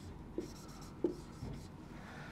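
Dry-erase marker writing on a whiteboard: faint, with a few brief strokes and taps.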